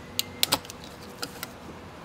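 A few sharp plastic clicks, the loudest two close together about half a second in, as the cooling fan's electrical harness connector is unclipped and pulled off.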